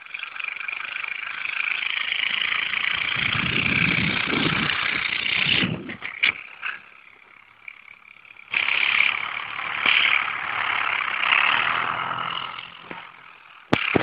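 Quad bike (ATV) engine running and revving at a distance as it drags a person over the snow; the sound drops away about six seconds in and comes back strongly about two and a half seconds later.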